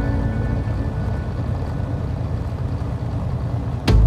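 Steady road and engine noise from inside a moving diesel truck's cab, low and even, with no music over it. Just before the end a sharp hit comes in as music resumes.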